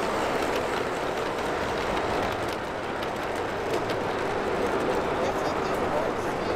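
LGB G-scale model trains running past on garden-railway track, with irregular clicks from the wheels over the rail joints, against a background of indistinct voices.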